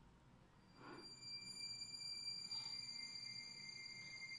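Faint opening of a film trailer's soundtrack: after a moment of near silence, a soft swell about a second in gives way to several thin, steady high tones held together.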